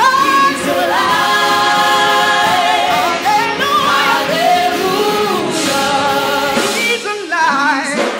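A gospel vocal group of women and one man singing in harmony through microphones, with a short break between phrases near the end.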